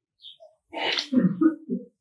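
A person sneezing once, a short sound of about a second that starts just under a second in.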